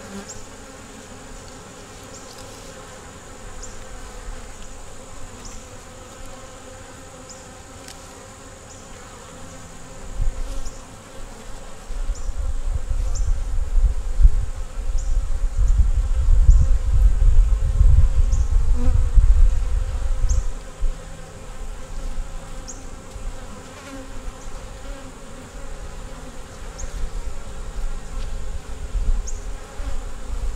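Honeybees buzzing steadily around an open nuc hive. From about ten seconds in, a low rumble rises under the buzz for about ten seconds, then eases off.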